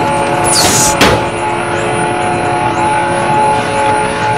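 Film sound design: a sustained, droning chord of several held tones over a noisy rumble. A high falling whoosh comes about half a second in, then a single hit at about one second.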